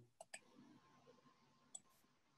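Near silence broken by faint computer-mouse clicks: two quick clicks just after the start and a single click near the end, made while starting a screen share.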